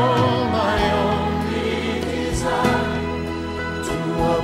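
Christian worship song: a choir singing held, sustained lines over a band with steady bass notes, with a couple of sharp accents, one about two and a half seconds in and one near the end.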